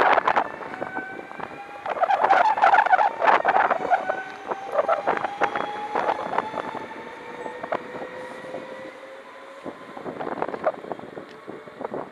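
A yellow NS double-deck electric train pulling out of the station: electric motor whine with several tones sliding slowly in pitch, and wheels clattering sharply over rail joints and points. The sound is loudest in the first seven seconds and fades as the train leaves.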